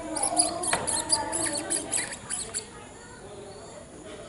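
An animal's rapid, high-pitched squeaky chirps, several a second, stopping about two and a half seconds in.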